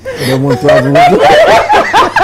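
Several people laughing. A low voice is held for about a second, then comes a quick run of short rising-and-falling laughs.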